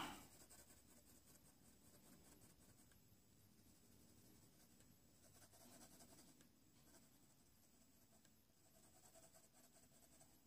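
Faint pencil scratching on paper as a shadow is shaded in with quick back-and-forth strokes.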